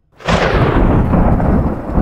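A loud rumbling noise that starts suddenly about a quarter second in and carries on. Its hiss fades quickly while the deep rumble stays.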